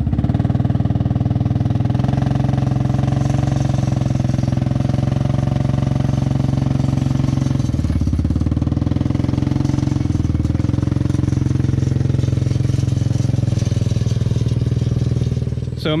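ATV engine running steadily under load while towing a car body on a chain, with a rapid even firing pulse. The engine note drops briefly twice around the middle.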